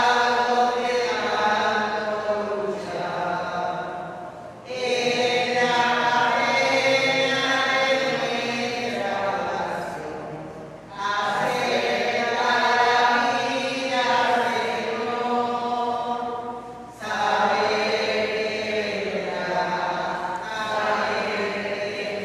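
An offertory hymn sung at Mass, in long phrases of about six seconds each with a short break between them.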